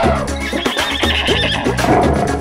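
A horse whinny sound effect, a high trembling call lasting about a second, over upbeat children's song music with a steady beat.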